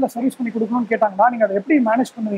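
A man speaking in conversation, with only speech heard.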